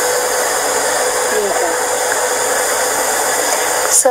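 Loud steady hiss with a faint steady hum tone under it and a faint voice murmuring beneath, cutting off abruptly at the very end.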